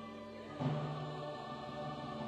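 Large church choir singing a sustained chord with instrumental accompaniment, a new chord coming in with a strike about half a second in.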